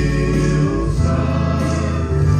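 Male gospel vocal trio singing in harmony into microphones, holding long notes.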